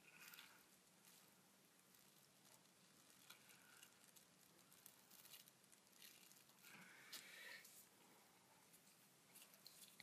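Near silence: room tone, with a few faint soft rustles.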